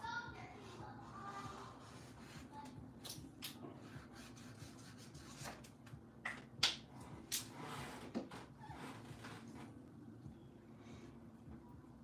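Thick black marker drawn and dabbed on paper: faint strokes with a scatter of sharp taps and clicks in the middle, the loudest about six and a half seconds in.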